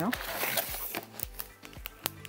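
Paper and cardboard packaging rustling and crinkling as a paper bath tea sachet is pulled from its box, loudest in the first second and then fading to light handling sounds.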